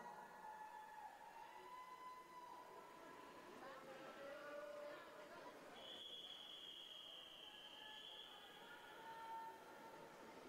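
A single long, steady whistle lasting about three seconds, starting a little past the middle: the referee's long whistle calling the swimmers up onto the starting blocks. Faint voices murmur under it.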